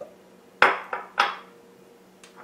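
Kitchen utensils and glass prep bowls clattering: three sharp knocks about a third of a second apart, the first loudest, as a spatula and glass bowls are knocked against the food processor bowl and the stone countertop.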